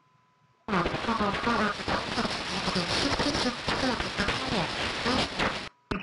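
Shortwave AM broadcast speech heard through an SDR receiver on scan, with hiss and static over the voice. After a brief near-silent gap with a faint steady tone, the station comes in abruptly under a second in, holds for about five seconds, and cuts off suddenly near the end as the scanner moves on.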